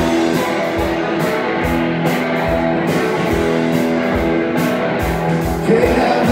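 Live band music with no vocals: electric guitar playing sustained notes over a steady kick-drum beat.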